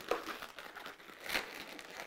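Latex twisting balloons rubbing against each other as a balloon's nozzle is wrapped around a twisted joint: faint, scattered rubbing noises with one louder rub a little past halfway.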